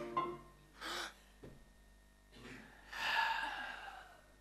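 A person's breathy gasp, then a longer sigh that falls in pitch.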